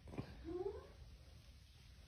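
A soft click, then a single short vocal sound that rises in pitch, about half a second in.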